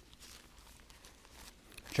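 Faint rustle of thin Bible pages being turned by hand, with a few soft ticks.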